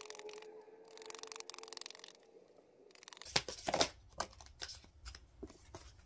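A deck of affirmation cards being shuffled by hand: a rapid fluttering run of card edges for about two seconds, then a few separate card snaps and taps.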